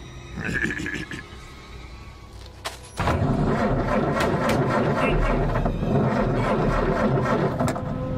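Cartoon soundtrack: a brief pitched vocal sound, then from about three seconds in a loud, steady motorboat engine rumble with scattered clattering.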